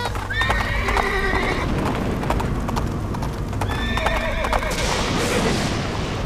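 A horse whinnying twice, about half a second in and again at about four seconds, over galloping hoofbeats. Near the end a rush of storm noise builds.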